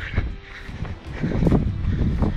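Gusting wind buffeting a running action camera's microphone: a low rumble that eases about half a second in and builds again in the second half.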